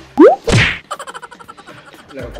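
Comic editing sound effects: a quick rising whoop near the start, then a loud falling swish and whack about half a second in, followed by a fast rattling run of ticks.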